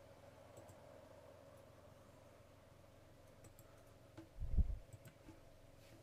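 Faint computer mouse clicks, a few scattered through, over a steady low hum, with one louder low thump about four and a half seconds in.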